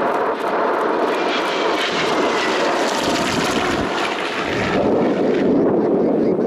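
Grumman F8F Bearcat's 18-cylinder Pratt & Whitney R-2800 radial engine, loud in a close flyby, its pitch falling slightly as it passes. Its higher sound thins out near the end as the fighter pulls away.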